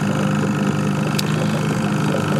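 Small boat outboard motor running steadily at trolling speed, an even low hum.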